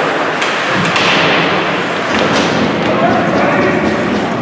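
Ice hockey play in an echoing rink: several sharp knocks of puck and sticks against the boards, over indistinct shouting voices.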